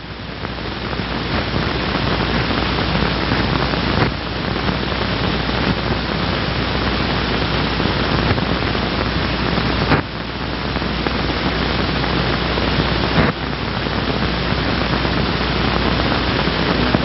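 Steady hiss with a low hum from the soundtrack of an old 16mm film print, with no voice or music. The hiss breaks off and drops sharply about four seconds in, again at ten seconds and near thirteen, each time with a click.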